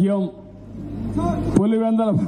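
A man making a public speech into a handheld microphone, pausing between phrases about a third of a second in and resuming about a second and a half in; in the pause a low steady hum is heard.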